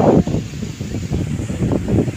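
Wind buffeting the microphone in uneven gusts, strongest at the very start.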